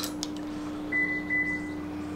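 A short electronic beep, a steady high tone with two stronger pulses, starting about a second in and ending just before the two-second mark, over a steady low hum.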